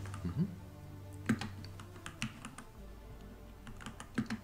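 Typing on a computer keyboard: a run of irregular keystroke clicks as a short name is keyed in.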